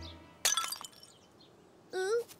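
Cartoon sound effect of a ceramic flowerpot falling and smashing: one sharp crash about half a second in, with a brief clinking tail. A short voice-like sound comes in near the end.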